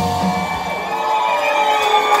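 End of a live rock song: the drums have stopped and the band's last electric guitar notes ring out as held tones, while the audience cheers and whoops.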